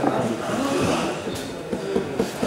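Indistinct voices of people talking in the background, with no clear words, over the general noise of a hall.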